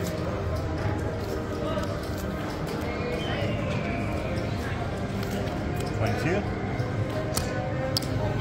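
Casino floor din: slot-machine music and background voices, steady throughout, with a few short clicks as playing cards are dealt onto the felt table.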